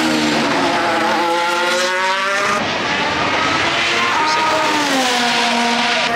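Formula One cars at speed on the circuit during practice: one engine note climbs steadily in pitch for about two seconds and then breaks off, and another car's note rises and then drops away as it passes.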